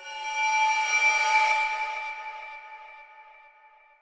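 A sampled eerie atmosphere pad from the Mirage 'Paranormal' preset, layering bowed textures with noise. One note comes in at once as several steady high tones with a hiss above them. The hiss dies away after about two seconds, and the tones fade out by near the end.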